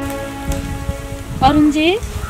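Outdoor background noise with irregular low crackles and rustles. Near the end a woman says a short questioning "ji?" that rises in pitch.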